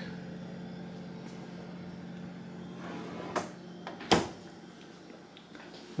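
Refrigerator humming steadily with the door open, a light knock of a bottle, then one sharp thump about four seconds in as the fridge door is shut.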